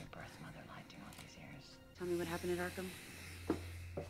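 Quiet TV episode soundtrack: faint, whispery dialogue, then about two seconds in music comes in over a low steady hum.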